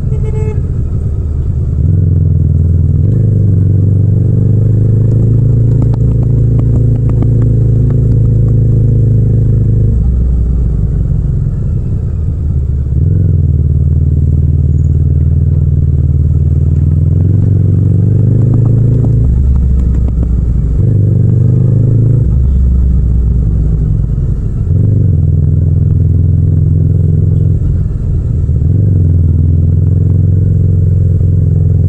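Yamaha MT-07's 689 cc parallel-twin engine running through city streets, its note rising on the throttle and dropping off it several times as the bike accelerates, shifts and slows.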